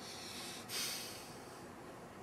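A single sharp breath through the nose about two-thirds of a second in, fading over about half a second.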